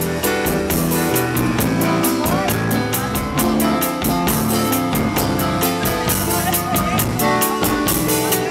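Live band music, driven by a Pearl drum kit keeping a steady beat under held pitched instrument notes and a bass line.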